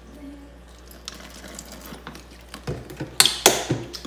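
Thin plastic water bottle and jug being handled while alcohol is poured into the bottle: a run of light crackles and clicks, then two louder plastic knocks about three seconds in.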